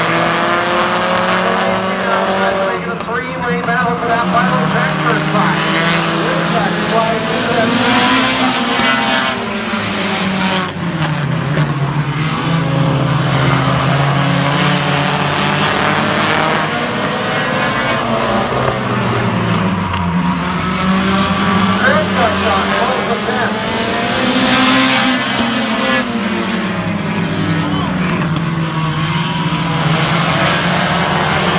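Engines of a pack of compact stock cars racing on an oval, several heard at once, their pitch rising and falling in sweeps as the cars pass and work through the turns.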